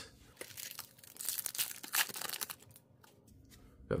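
A 2024-25 Upper Deck MVP Hockey card pack being torn open by hand, its wrapper crinkling and crackling for about two seconds before it goes quiet.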